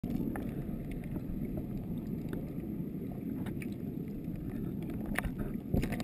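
Underwater sound of shallow sea water moving around a submerged camera: a steady low rumble with scattered sharp clicks and ticks, and a slightly louder knock near the end.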